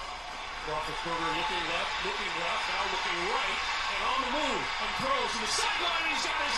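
Television football broadcast audio: a commentator's voice calling the play, quieter than the room speech around it, over a steady crowd hiss.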